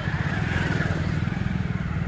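A motorcycle engine running at low speed close by, a steady rapid putter, with busy street noise behind it.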